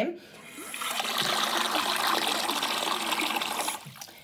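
Bath tap running, water pouring into a shallow pool of bathwater in the tub with a steady rushing splash; it starts about half a second in and stops suddenly near the end.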